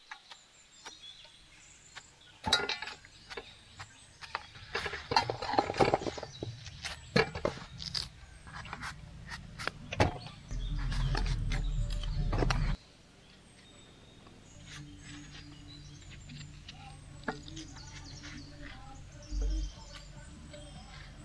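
Kitchen knives cutting watermelon and tapping against aluminium plates: a scatter of sharp clicks and knocks over the first half, then a low rumble for about two seconds.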